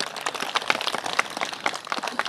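A crowd clapping: many quick, irregular claps overlapping.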